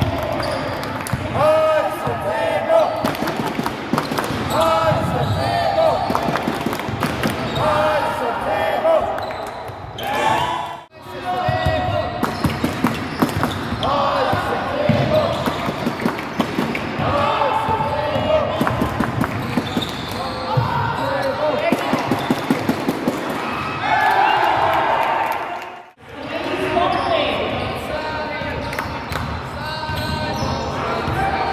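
Basketball game in a large hall: a ball bouncing on the wooden court, mixed with players' voices calling out. The sound drops out briefly twice, about eleven and twenty-six seconds in.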